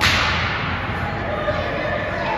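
A sudden sharp crack on the ice hockey rink, trailing off in a hiss over about half a second, with a smaller knock about a second and a half later.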